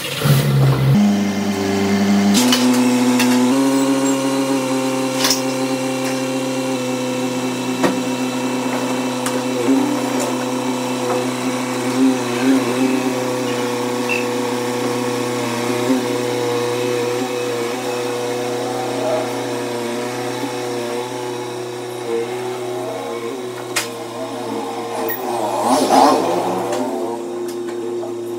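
Toyota Etios Liva hatchback's engine running, its pitch shifting over the first two seconds or so before settling into a steady idle, with a few light clicks.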